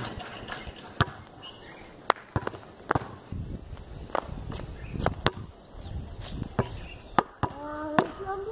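A basketball striking the backboard and rim and bouncing on a concrete court: about nine sharp knocks at irregular intervals. A short voice sounds near the end.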